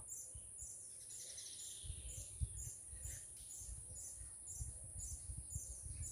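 Faint daytime forest sound: a high, steady insect drone pulsing about twice a second, with a bird calling in a falling phrase about a second in.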